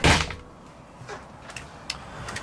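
A wooden motorhome washroom door thudding shut right at the start, then a small click near the end.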